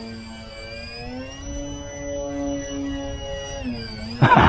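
Twin electric motors and propellers of a foam-board RC plane whining in flight, the pitch rising about a second in as the throttle goes up, holding, then falling back near the end; the two motors' tones run at slightly different pitches.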